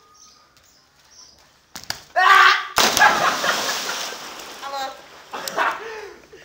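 A yell, then a loud slap as a body lands belly-first in a belly slam, followed by a rush of noise that fades over about a second and a half.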